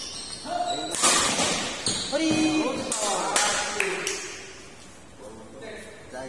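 Badminton rackets striking a shuttlecock in a singles rally, several sharp hits in the first four seconds, each echoing off the hall's walls. The rally ends and the sound dies down near the end.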